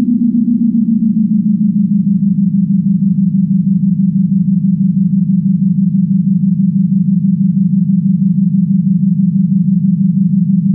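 Space Case TE-1 tape echo self-oscillating with its feedback turned up, giving a loud, steady, fluttering drone. The pitch slides down a little in the first second as the time control is turned, then holds.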